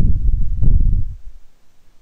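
Loud low rumble on the microphone, lasting about a second and a half and dying away about a second in, with nothing higher-pitched on top.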